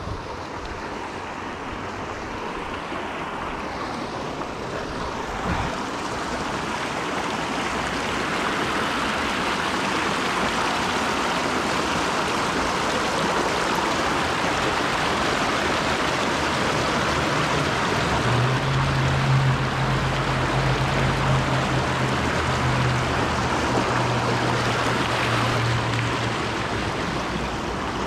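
Creek water rushing over rocks in small rapids: a steady rush that grows louder as the camera nears the water. A low steady hum joins for several seconds in the second half.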